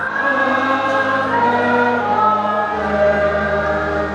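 Many voices singing a hymn together in long held notes, over a low sustained accompaniment that moves to a new note about two-thirds of the way through.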